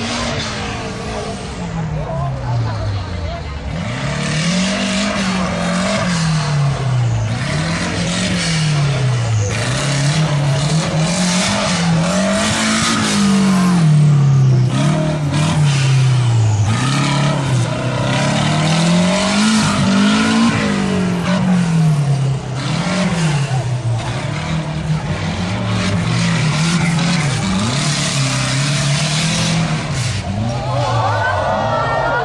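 Off-road race car's engine revving up and down over and over, a rise and fall every two to three seconds, as it is driven hard across a loose dirt course.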